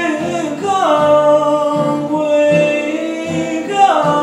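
A man singing with a strummed acoustic guitar, holding long notes that slide down in pitch about a second in and again near the end.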